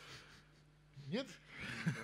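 A man's breathy exhale, then a short spoken question with rising pitch about a second in, and the start of a chuckle near the end, over a steady low electrical hum.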